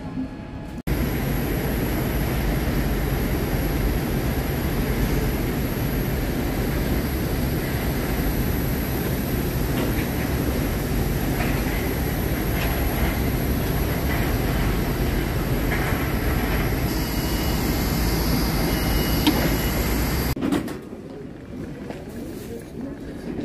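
Jet airliner's engine and airflow noise heard from inside the cabin as the aircraft moves on the ground, a steady loud rumbling roar with a thin high whine over it.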